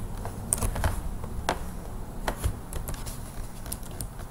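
Computer keyboard keys tapped irregularly, about eight separate clicks, over a low steady hum.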